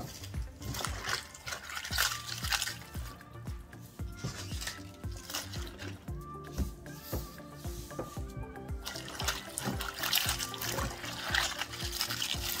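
Sliced cabbage being swished and splashed by hand in a tub of vinegar water, over background music. The splashing is strongest at the start and again over the last few seconds.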